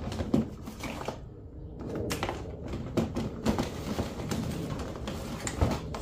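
Hands rummaging through a plastic storage tote: plastic DVD and game cases and loose items clattering and knocking against each other, with irregular clicks and rustling.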